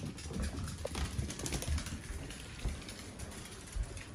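Small dogs' claws clicking and pattering on hardwood and tile floors as they trot along, over irregular low thumps of footsteps and movement.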